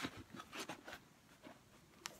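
Faint rubbing and light ticks of a suede Air Jordan 4 sneaker being turned over in the hands. Most of it falls in the first second, and it quietens after that.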